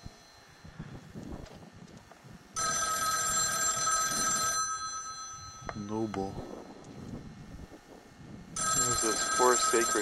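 A payphone ringing twice, each ring about two seconds long with about four seconds between them: the steady ring cadence of an incoming call.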